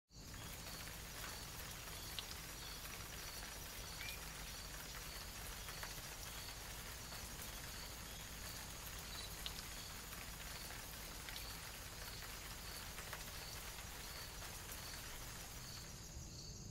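Faint, steady background hiss with a soft high chirp repeating about every three-quarters of a second and a few light clicks.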